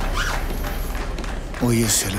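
A man's voice starts near the end with a short utterance that no words were transcribed for, over a faint steady background.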